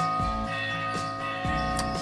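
Church bell ringing, rung by hand with a rope to call people to Mass. Several tones hang on steadily, with faint strikes every half second or so.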